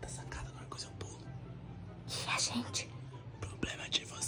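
A woman whispering close to the microphone in short breathy phrases, over a low steady hum.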